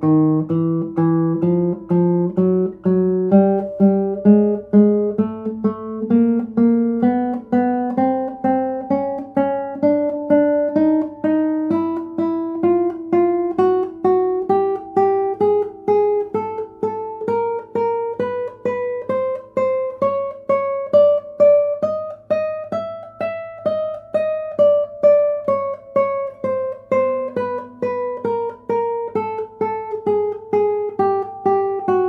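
Nylon-string classical guitar playing a slow chromatic scale in an even rhythm, repeating each note. The pitch climbs step by step until about 23 seconds in, then steps back down.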